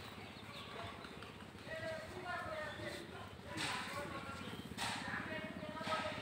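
Faint talking voices in the background, starting a couple of seconds in and going on in short stretches.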